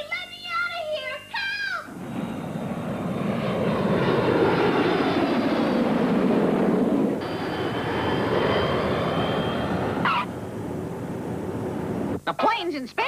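Cartoon sound effect of an airliner flying by: engine noise swells, peaks and passes, its pitch sliding as it goes. About ten seconds in comes a brief squeal, then a lower steady rumble as the plane's wheels touch down.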